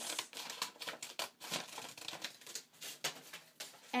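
Scissors snipping slits into a brown paper bag, with the paper rustling and crinkling as it is handled: a run of short, irregular cuts.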